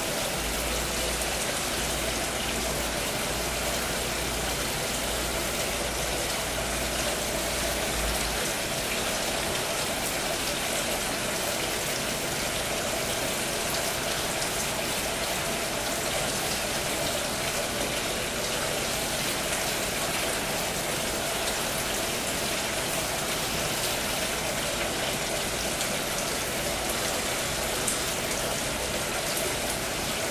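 Steady, even hiss of background noise with no distinct events, with a low hum underneath that stops about eight seconds in.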